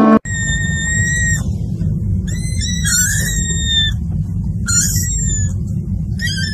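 A small kitten mewing in long, very high-pitched calls, four in a row, the second one wavering in pitch, over a steady low rumble.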